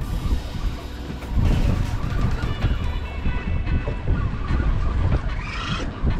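Wind buffeting the microphone with an irregular, heavy low rumble on an open boat at sea.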